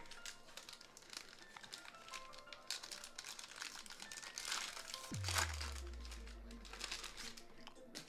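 Foil trading-card pack wrappers crinkling and tearing as packs are ripped open, over background music. About five seconds in, a deep bass tone drops in and fades out over the next few seconds.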